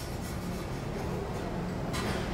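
Steady background noise with a faint low hum, and no distinct event.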